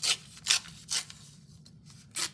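A strip of paper torn off along the edge of a ruler in three short rips, all within the first second.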